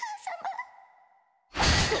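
A soft, breathy voice sighing with a wavering pitch, fading out over a faint steady ringing tone; about a second and a half in, a sudden loud rushing whoosh sound effect cuts in.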